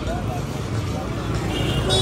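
Busy street ambience: people talking all around over the rumble of vehicle traffic. A high steady tone comes in near the end.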